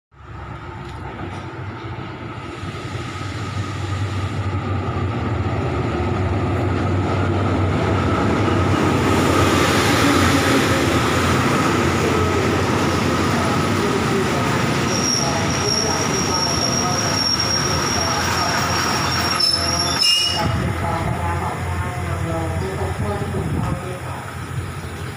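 Diesel-hauled passenger train pulling into a station, its running noise growing louder as it approaches and the coaches roll past. About two-thirds of the way through, a high steady squeal sets in as it brakes, and it cuts off sharply with a click as the train comes to a stop.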